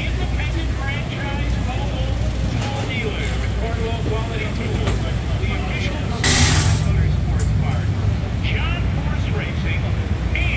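Several people talking over a steady low rumble, with a brief burst of hissing air about six seconds in.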